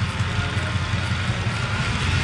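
Track bike spinning fast on cycling rollers, the rollers and tyres making a steady whirring hum.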